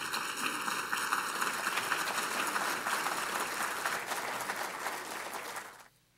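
Audience applauding: a dense, steady round of clapping from a seated crowd that cuts off suddenly near the end.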